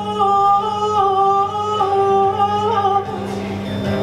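A woman singing a long phrase of held notes over a strummed acoustic guitar; the voice stops about three seconds in and the guitar carries on alone.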